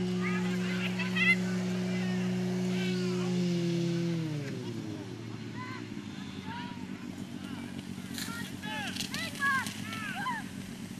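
Portable fire pump engine running at a steady pitch, dropping in pitch about four seconds in and then running on lower. Shouting voices over it, most of them near the end.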